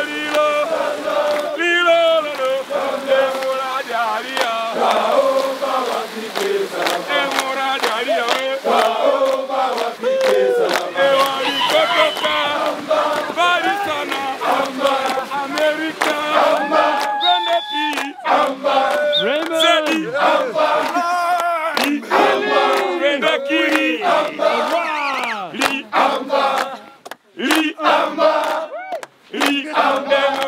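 A group of voices chanting and singing together over a steady held note, dropping out briefly twice near the end.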